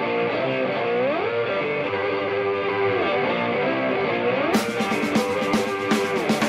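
Slide guitar playing a riff that glides up and down in pitch, in a rock song. A drum kit with cymbals comes in about four and a half seconds in.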